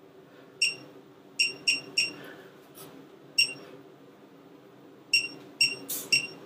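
Anova sous vide cooker's touchscreen beeping as its buttons are tapped to set the cooking time: about eight short, high, single-pitched beeps at uneven intervals, over a faint steady hum.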